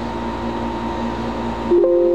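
Steady mechanical hum and hiss with a faint high whine. About 1.7 seconds in, a louder held two-note tone starts and carries on.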